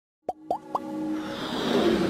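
Three quick rising pop sound effects about a quarter second apart, then a swelling whoosh that builds under sustained synth tones of an intro jingle.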